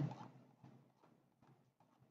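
Near silence: faint room tone with a few faint ticks.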